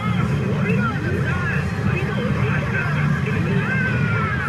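Pachinko parlour din: a loud, steady wash of machine noise. Over it a CR Lupin the Third pachinko machine plays its electronic effects, many short gliding chirps, and voice clips.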